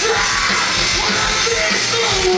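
Live heavy metal band playing loudly and without a break, with yelled voices over the guitars and drums.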